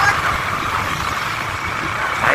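Steady rushing road and wind noise with engine hum, heard from riders on a moving two-wheeler.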